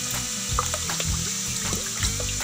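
Water splashing and churning as a crowd of red-eared slider turtles scramble at the pond surface for food, over background music with a steady bass line.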